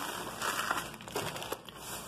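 Thin plastic grocery bags rustling and crinkling as a hand rummages through them, in irregular bursts that are louder in the first second.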